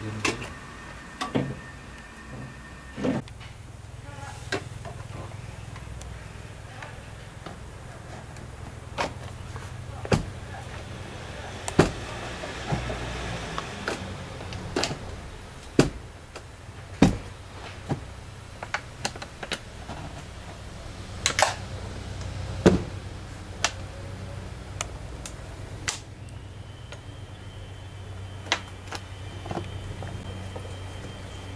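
Scattered sharp clicks and knocks of parts being handled by hand under a truck, over a steady low hum.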